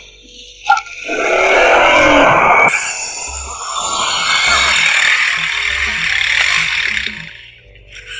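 Film background music with a slow, low beat about once a second, under a loud rushing noise that swells twice and fades out near the end.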